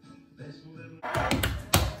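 A quick run of knocks and thuds with a low rumble, starting about a second in, after a quieter first second.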